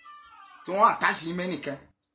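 A man's voice chanting one short phrase of a repeated refrain, with a drawn-out sung vowel, then cutting off to dead silence near the end.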